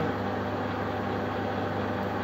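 Wilson lathe running at a slow spindle speed, a steady hum from its motor and gear train, with the carriage not yet engaged and the tool not cutting.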